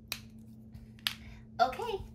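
Two short, sharp clicks about a second apart, then a woman begins speaking near the end.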